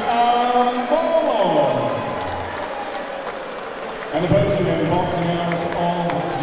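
Ring announcer's drawn-out, sung-style call over the hall's PA, long held notes with one falling steeply in pitch about a second and a half in and another held call from about four seconds, with scattered clapping from the crowd.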